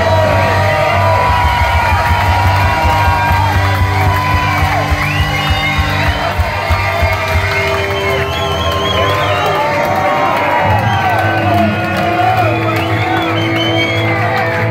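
Live punk rock band in a club, with amplified guitars and bass holding ringing chords. Drum hits run through the first half and stop about halfway. A crowd cheers and shouts throughout.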